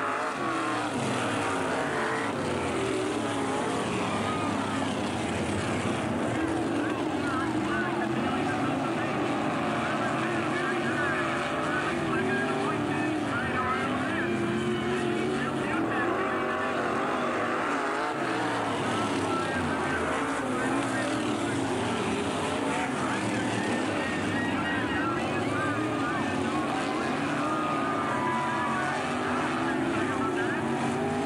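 Several modified race cars' V8 engines running at racing speed, their pitch rising and falling as they pass around the oval.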